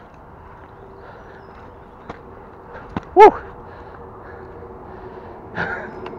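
Quiet outdoor background with a couple of faint clicks, then about three seconds in one brief rising-and-falling vocal sound, a short wordless exclamation from a person.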